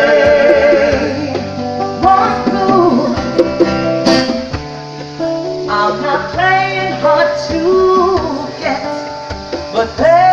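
Live acoustic music: a plucked acoustic guitar and hand drums, with a woman's voice singing over them. The music thins out about halfway through, then the voice comes back in.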